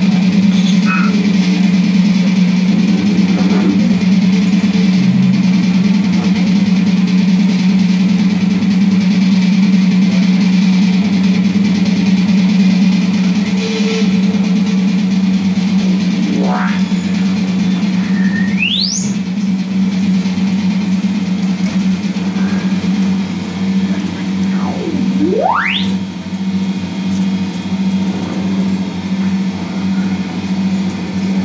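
Free-improvised electric guitar and modular electronics: a loud, steady low drone under a wash of noise. About two-thirds through, a sharp rising pitch sweep cuts across it, and a second sweep dips and then climbs a few seconds later. Near the end the drone breaks into a choppy pulse.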